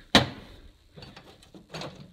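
A single sharp knock right at the start, then a few faint clicks and rustles: a can of R134a refrigerant with its fill hose being set down and handled.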